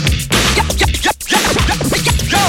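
A DJ scratching a vinyl record on a turntable over the music: quick back-and-forth pitch sweeps, with a brief cut-out of the sound a little past the middle.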